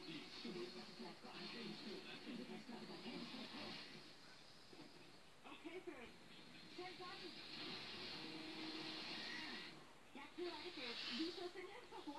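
Faint, indistinct voices in the background, too low for words to be made out, with some hiss.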